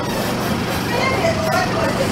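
A steady background noise with faint, indistinct voices underneath it.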